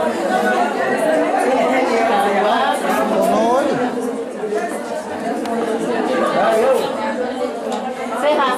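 Many people talking at once: a dense, steady murmur of overlapping conversation from a crowd of guests in a room.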